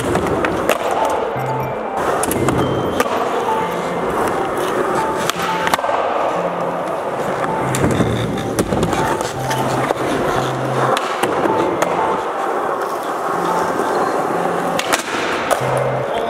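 Skateboard wheels rolling over a smooth concrete floor, with sharp clacks of the board popping and landing several times along a line of tricks. Background music with a repeating beat plays underneath.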